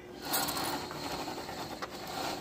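Continuous ratchety scraping and rattling of a phone being pushed against window blinds, with a small click near the end.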